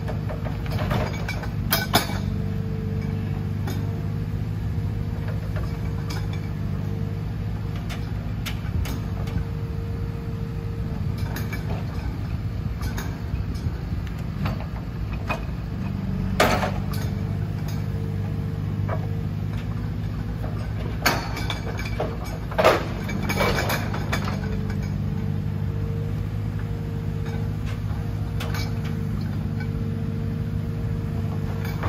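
Forestry forwarder's diesel engine running steadily as its hydraulic crane swings and grips logs. A thin hydraulic whine comes in early and again near the end, and a few sharp knocks of log and grapple sound about halfway and three-quarters through.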